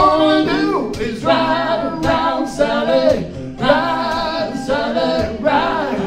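Live acoustic duo: a man and a woman singing together in harmony over two strummed acoustic guitars, in sung phrases about a second long with short breaks between them.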